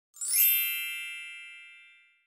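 A single bright chime sound effect on an intro logo, struck once and ringing out, fading away over about a second and a half.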